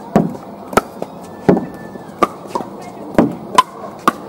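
Pickleball paddles hitting a plastic ball: sharp pops at uneven intervals, about six in four seconds, with two close together near the end.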